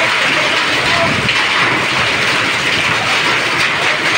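Heavy rain pouring down and splashing on the muddy ground and on a parked car: a loud, steady hiss.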